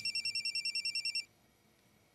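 Mobile phone ringing with a rapid electronic warbling trill, about a dozen pulses a second. It cuts off suddenly a little over a second in.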